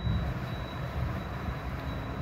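Steady low background rumble with a faint, thin, high steady whine.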